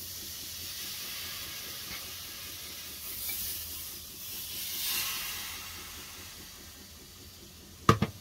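Steam hissing and sizzling as a cloth is wiped over a freshly soldered, still-hot copper pipe. It starts suddenly, swells twice, then dies away as the pipe cools, and a sharp knock comes near the end.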